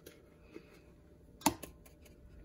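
A spatula scraping soft ice cream out of an ice cream maker's freezer bowl into a mixing bowl. About one and a half seconds in there is a sharp knock, followed by a couple of lighter clicks, as the spatula and bowls knock together.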